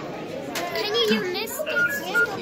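Children's voices talking and calling out, with a few short, steady high beeps near the end.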